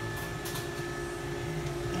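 Steady machine hum of sterilizer equipment, with a few held pitched tones over a low drone, and a few faint clicks near the start as the autoclave's stainless steel door is pulled open.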